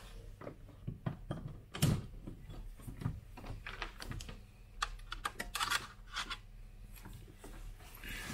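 Irregular clicks, knocks and rustles of handling as a soldering gun's power cord is plugged into the mains. The sharpest knock comes about two seconds in, and a quick run of clicks follows around five to six seconds in.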